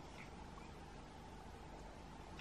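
Very quiet, steady room tone: a faint even hiss with a low hum and no distinct sound.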